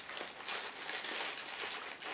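Faint crinkling of a black foil blind bag holding a Funko Mystery Mini figure, squeezed and turned in the hands to guess the figure inside.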